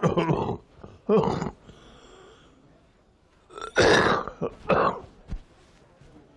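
An elderly man clearing his throat and coughing in four short bursts: two in the first second and a half, two more about four seconds in.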